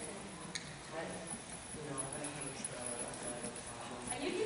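Hoofbeats of a Tennessee Walking Horse cantering on soft arena footing, with people talking indistinctly over them.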